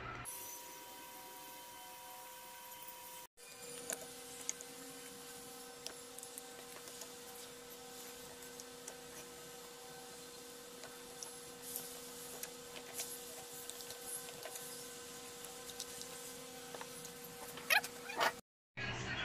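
Faint, steady electrical hum under scattered light clicks and scrapes of a fork against a bowl as instant noodles are stirred with their sauce.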